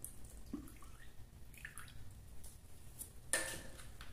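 Activator liquid poured from a small plastic bottle into a tub of guanidine hair-relaxer cream, faintly trickling and dripping, with a single knock near the end.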